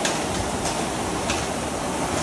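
Concept2 air rowing machine in use: a steady whoosh from its fan flywheel, with a few faint ticks.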